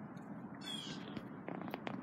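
A short, high animal call falling in pitch, followed about a second later by a few quick clicks, over a steady low background rumble.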